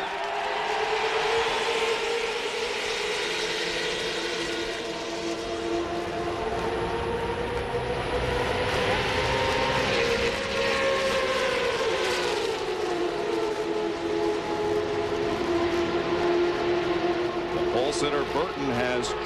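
A pack of IROC V8 stock cars at full throttle just after the green flag, their engines blending into one steady droning chord. The pitch slides down about eleven to thirteen seconds in and settles lower.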